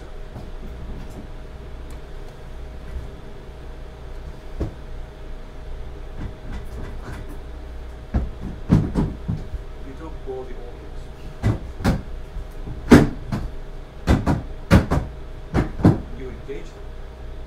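A chair being knocked and banged about on the floor, acted out as a show of frustration: scattered knocks at first, then from about halfway a string of sharp, loud knocks, the loudest about three-quarters through.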